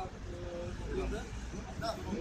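Voices of people talking in Romanian over a steady low rumble of road traffic.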